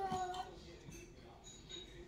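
A toddler's short wordless vocal sound: one held, slightly wavering note of about half a second at the very start.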